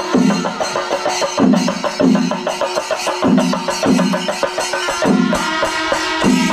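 Chenda melam: a massed ensemble of chenda drums beaten with sticks in fast, dense strokes, with elathalam hand cymbals keeping time. A deep beat recurs through it, often in pairs.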